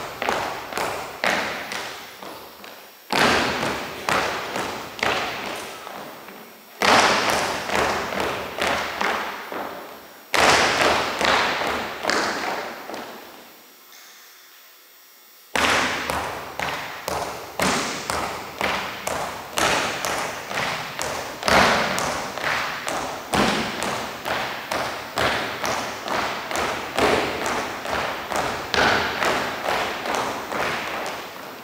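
Drill team's synchronized marching steps and stomps on a wooden gym floor, about two footfalls a second, ringing in the large hall. The steps come in phrases, each opening with a louder stomp, with a brief pause about halfway through.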